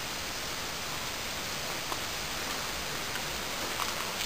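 Steady, even background hiss, with faint clicks about two seconds in and again near the end.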